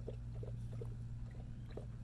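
A dog lapping water from a metal bowl: faint, uneven laps over a steady low hum.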